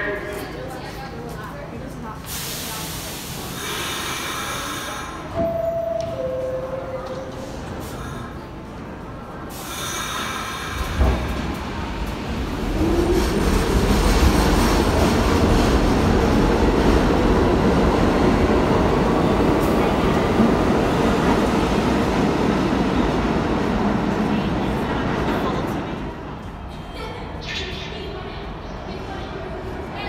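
Subway train pulling out of an underground station. It starts moving about eleven seconds in with a rising motor whine and grows into a loud, steady rumble as the cars run past. The rumble falls away over the last few seconds as the train clears the platform. Earlier, two short descending tones sound over quieter station noise.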